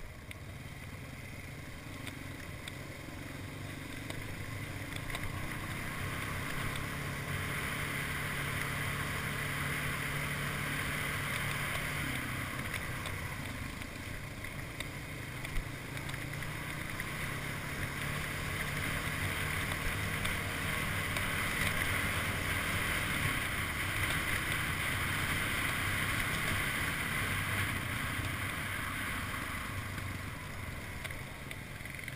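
Sport ATV engine running under way on a dirt trail, with wind rushing over the microphone. The engine and wind noise grow louder about six seconds in, ease off briefly a little before halfway, and rise again in the second half.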